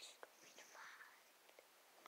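Near silence, with the faint scratching of a pencil drawing lines on paper.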